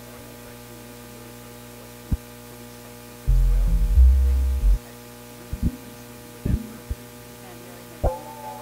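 Steady electrical mains hum from an amplified electronic keyboard rig, with a single thump about two seconds in. Midway, a brief run of a few deep bass notes from the keyboard steps down in pitch over about a second and a half and is the loudest sound. A few short clicks follow near the end.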